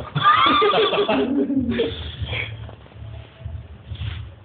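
A person's loud, high-pitched laugh that wavers in pitch for about the first second, then drops lower and dies away by about halfway through.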